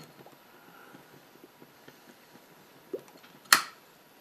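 A briar tobacco pipe being puffed while it is relit with a brass flip-top lighter: faint soft puffs and lip pops, then a single sharp click from the lighter about three and a half seconds in.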